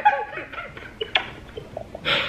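A woman's stifled laughter, muffled behind her hand: short, faint giggles with a sharp click about a second in.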